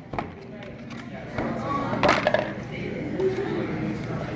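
Clear plastic clamshell salad container being handled, giving a couple of sharp plastic clicks; the louder one comes about two seconds in. A voice talks in the background.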